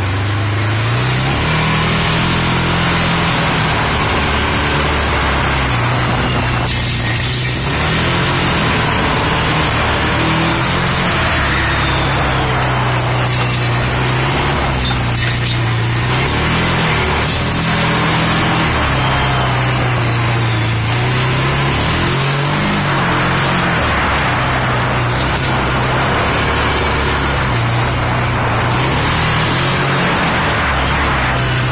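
Side-by-side utility vehicle's engine running under way, its pitch rising and falling again and again with the throttle over a steady wash of noise.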